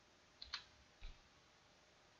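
Faint clicking from computer controls while working at a desk: a quick pair of sharp clicks about half a second in, then a soft low knock just after a second, over otherwise near-silent room tone.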